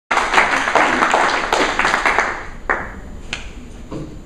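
A small group applauding, the clapping thinning out after about two seconds into a couple of last single claps.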